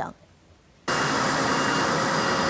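Near silence for about a second, then steady street traffic noise with an engine running cuts in suddenly.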